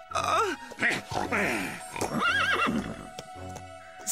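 Cartoon horses neighing and whinnying over background music: a falling whinny just after the start, more falling calls through the first couple of seconds, and a higher, wavering whinny about two seconds in.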